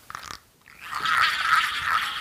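Dry, gritty rattling from a small noisemaker shaken by hand, starting about a second in and running on steadily.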